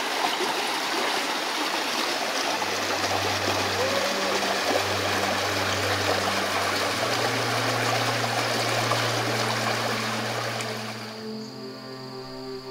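Shallow stream running over rocks, a steady rush of water. Background music with sustained low notes comes in about two and a half seconds in, and the water sound cuts off abruptly near the end, leaving the music.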